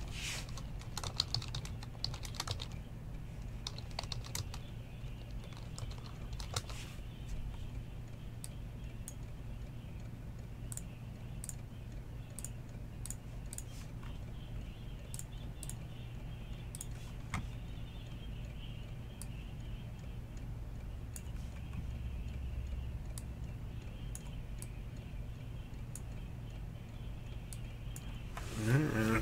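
Typing on a computer keyboard: quick runs of key clicks in the first several seconds, then scattered single keystrokes, over a steady low hum.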